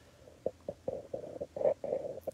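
Haircutting scissors snipping the ends of hair in a quick run of short snips, about five a second, starting about half a second in.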